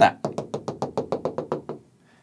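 Stylus tapping quickly on a touchscreen display as it draws a dashed line, a rapid even run of about fourteen taps, eight or nine a second.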